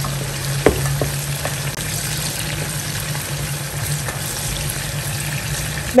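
Sliced onions sizzling steadily as they fry in hot palm oil in a pot, with a couple of light knocks about a second in. A steady low hum runs underneath.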